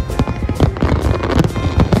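Fireworks going off in a rapid, dense barrage of sharp bangs and crackles, several a second, with music playing alongside.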